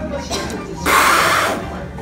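A man's short, harsh, breathy noise of mock disgust at a mouthful of food, lasting about half a second, about a second in. It is a joke: the food is in fact good.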